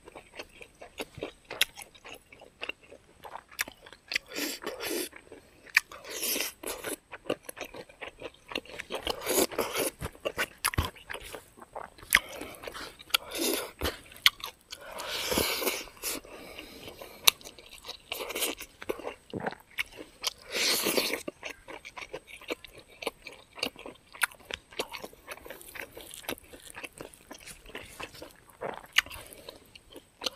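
Close-miked chewing of a mouthful of smoked pork and rice, with crunches and many small wet mouth clicks, and a few louder bursts of eating noise spread through.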